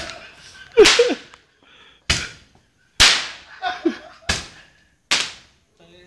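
Firecrackers going off: about six sharp, loud bangs at irregular intervals, each with a short echoing tail. Short shouts come between them.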